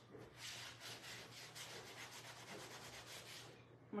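Microfibre cloth rubbed back and forth over a leather chair seat, buffing in leather conditioner, in faint quick strokes about three or four a second. The rubbing stops shortly before the end.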